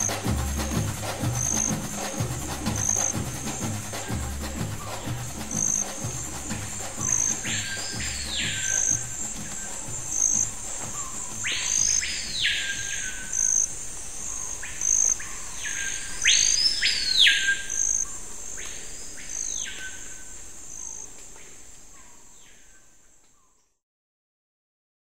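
Nature soundtrack of insects, a steady high trill pulsing about every second and a half, with a bird giving several whistled calls that rise and fall in pitch. Low drum music fades out in the first several seconds, and everything fades to silence near the end.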